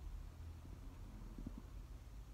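Quiet room tone: a low steady rumble with a few faint soft knocks, the clearest about one and a half seconds in.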